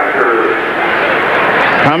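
Onboard-camera sound of an Indy car at racing speed: a loud, even roar of engine and wind noise whose pitch sags and then climbs again. A commentator's voice comes in near the end.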